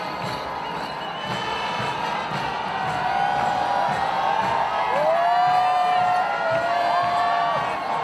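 Stadium crowd cheering over music, with long held high tones rising in over the noise about three seconds in and the whole growing louder after that.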